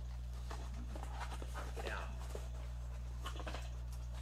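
Cardboard being handled: a small inner box drawn out of a shipping carton, with faint scrapes and light taps, over a steady low hum.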